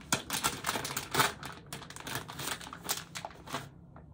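Resealable plastic candy bag being opened and handled: a rapid run of crinkling crackles that stops just before the end.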